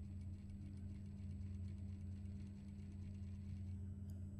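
Sewing machine stitching a piping into a seam: a fast, even ticking of the needle over a steady low hum, stopping shortly before the end.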